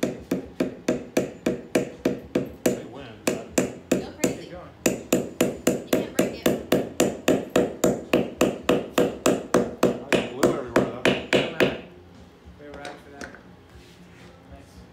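Hammer driving a glued wooden wedge into the handle end of a wooden mallet, so that the head sits tight: quick, even blows about three a second, with a short break about five seconds in, stopping shortly before the end.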